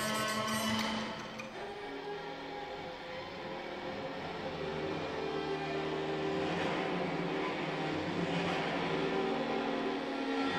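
Contemporary chamber ensemble of strings and winds playing live: long, overlapping held notes that thin out and drop in level about a second in, then slowly build again.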